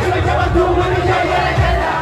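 A crowd yelling along with a rapper's voice through the sound system, over the heavy bass of the backing track.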